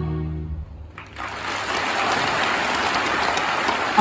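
The last held chord of an ambient-style backing track fades out. About a second in, a concert audience bursts into steady applause.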